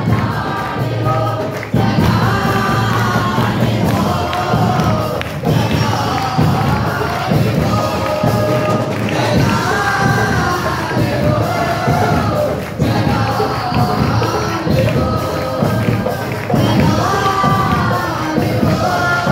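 Live worship song: a lead singer through a microphone with other singers and band accompaniment with a steady beat, and the congregation singing along and clapping.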